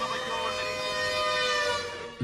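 Roof-mounted horn loudspeakers on a Volkswagen van broadcasting one long, held siren-like tone with many overtones, dipping slightly in pitch near the end.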